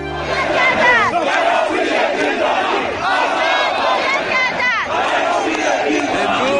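A large crowd of protesters shouting together, many raised voices overlapping; a music bed cuts off about half a second in.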